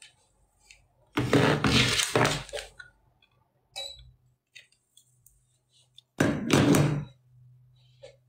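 Two loud bursts of handling noise, the phone's microphone rubbed and knocked as the phone is moved and set down: the first about a second in, lasting over a second, the second shorter, about six seconds in. A faint low hum sets in between them.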